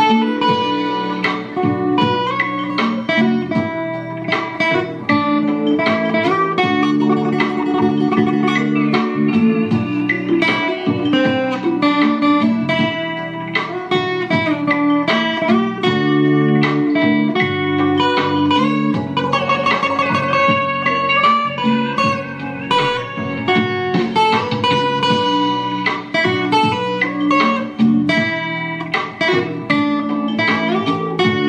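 Fingerstyle playing on an Enya EGA X1 Pro acoustic-electric guitar: a continuous run of plucked melody notes over bass notes.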